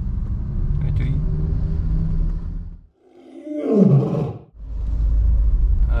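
Steady low engine and road rumble inside a moving car's cabin, which cuts out about three seconds in. A short, loud sound gliding down in pitch fills the gap for about a second, then the cabin rumble returns suddenly.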